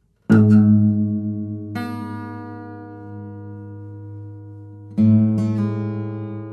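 Solo acoustic guitar, freely improvised: a loud chord struck about a third of a second in and left to ring and fade, with a higher note added just before two seconds. Near the end another chord is struck, with two quick follow-up plucks, and it rings out.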